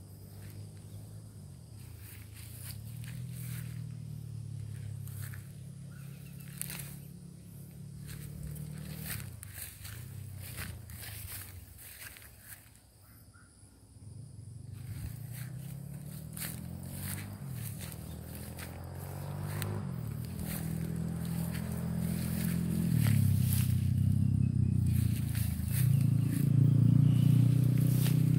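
Footsteps through grass and phone handling noise, with scattered clicks. A low hum with a wavering pitch runs underneath, fades out for a couple of seconds around the middle, then grows louder over the last several seconds.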